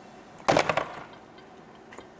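Plastic bottle of supercooled water knocked down hard onto a tabletop: a short clatter of several quick knocks about half a second in. It is the jolt meant to set off freezing of the chilled water.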